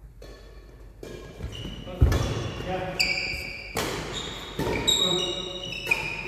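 Badminton doubles rally: racket strings hitting the shuttlecock about once a second, and sports shoes squeaking on the wooden court floor, echoing in the hall. It starts about a second in.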